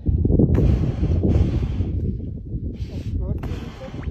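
Wind buffeting the microphone in a heavy low rumble. Over it come four short breathy hisses: a seal breathing through its nostrils at a breathing hole in the ice.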